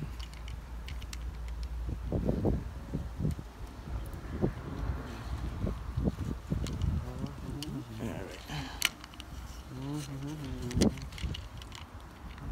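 A screen spline roller and hands pressing rubber spline into the aluminium channel of a pool-enclosure frame, making scattered clicks and rubbing. A voice is heard faintly near the end.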